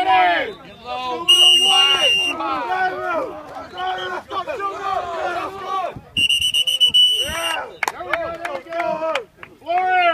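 A group of football players shouting and cheering around a one-on-one hitting drill. Two long, shrill, steady whistle tones cut through, one about a second in and a longer one about six seconds in.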